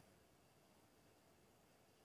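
Near silence: faint, even hiss with no distinct sound.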